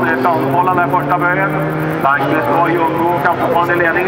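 Folkrace cars racing on a dirt track, their engines a steady drone heard beneath a voice that talks throughout.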